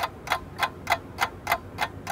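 Clock-ticking sound effect, an even run of sharp ticks about three and a half a second, added in editing as a waiting cue.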